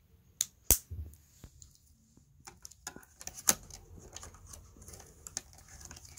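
Plastic gears of a HypnoGraph drawing machine handled and set onto its plastic base, giving scattered sharp clicks and knocks; the loudest come just under a second in and again about three and a half seconds in, with faint rustling between.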